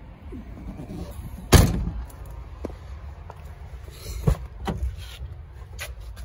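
A Range Rover door shut with one loud, sharp thud about a second and a half in, then two lighter clicks of a door latch a little after four seconds.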